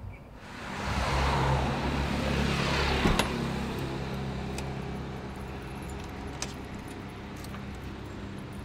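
Street traffic: a motor vehicle passes close by, swelling over the first second or so and fading away over the next several seconds. A sharp click comes about three seconds in.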